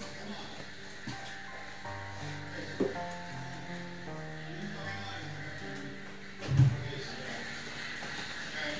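Background music with slow held notes. A short knock comes about three seconds in, and a louder, deeper thump about six and a half seconds in.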